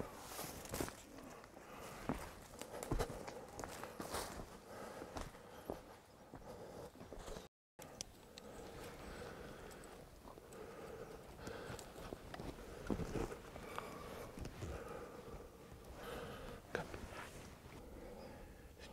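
Faint footsteps and rustling through dry scrub, with scattered soft knocks, as people move quietly through bush. There is a brief break just past the middle.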